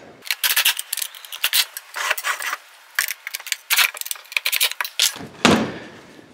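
Quick, irregular metallic clicking and rattling of a 10 mm hand tool running bolts in to fasten a swivel stool's seat plate to its chrome frame, with a brief low thump near the end.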